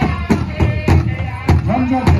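Powwow drum and singers: a big drum struck in an even beat by several drummers, with the singers' high voices carrying over it.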